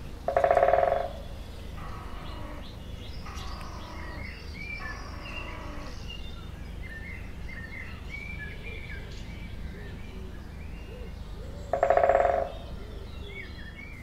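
Birds chirping over a steady low background rumble, with two louder, drawn-out calls: one about a second in and one near the end.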